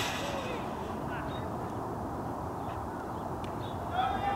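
A baseball bat cracking against the ball in one sharp hit at the start, then open-air ballfield noise with faint distant shouts.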